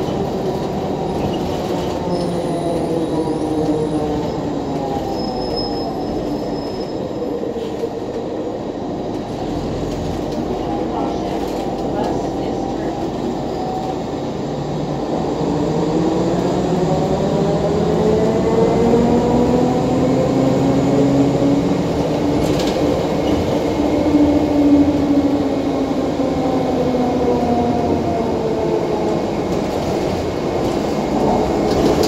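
Inside the cabin of a 2014 Nova Bus LFS hybrid-electric bus under way: the Allison EP40 hybrid drive gives a pitched electric whine that rises and falls with road speed, over the rumble of the Cummins ISL9 diesel and the road. The whine drops in pitch over the first several seconds, climbs again about halfway through, holds high, then eases off near the end.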